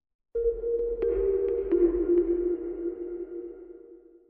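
Short electronic logo sting: two sustained low synth tones with a few light pings over them, starting suddenly and fading out near the end.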